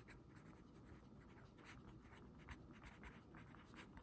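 Faint scratching of a pen writing a word on paper: an irregular run of short strokes, several a second.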